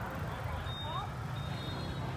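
Busy street-market crowd ambience: faint scattered voices over a steady low rumble of traffic and motorbikes, with a thin, high tone sounding briefly twice.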